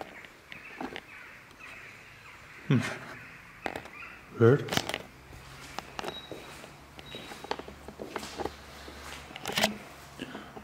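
Footsteps and handling knocks as someone walks across a tiled floor strewn with debris, broken by a few short vocal sounds.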